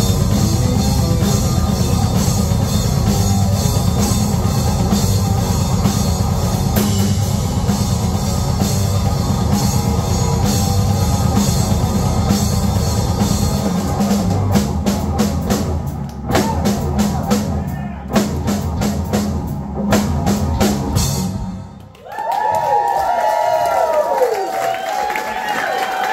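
Live rock trio playing loud on electric guitar, electric bass and drum kit. About halfway in the band breaks into a run of sharp, spaced accented hits, then after a short drop a lone electric guitar plays sliding, bending notes.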